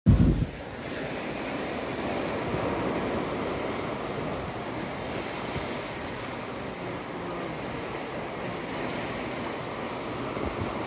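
Sea surf breaking and washing over shoreline rocks: a steady rush of water. A brief loud low rumble comes at the very start.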